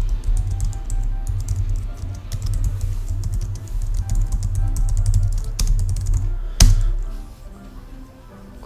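Computer keyboard typing: a steady run of keystroke clicks with a low rumble beneath, and one louder keystroke a little before the end.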